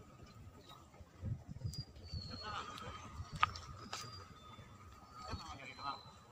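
Quiet outdoor ambience: faint distant voices, a faint steady high tone, and a scatter of short high chirps, with a sharp click about three and a half seconds in.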